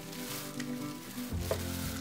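Rustling and crinkling of shredded paper packing fill and bubble wrap as a wrapped item is pulled out of a box, with a few small clicks. Soft background music plays underneath.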